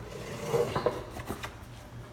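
A few light knocks and clatters of handling, over a faint steady low hum.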